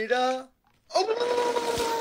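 A man's voice holding a pitched note that breaks off about half a second in. After a short gap comes a long steady note with a breathy hiss over it.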